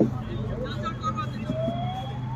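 A distant siren rising in pitch through the second half, over a steady low hum, with a short spoken word at the start.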